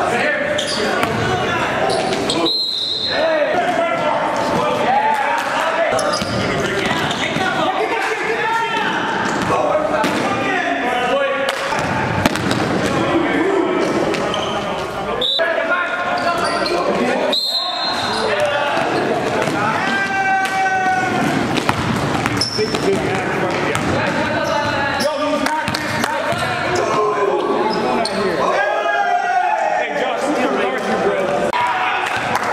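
Live basketball game sound in a gymnasium: a basketball dribbled on the hardwood floor, with players calling out indistinctly and a couple of short high squeaks, all echoing in the large hall.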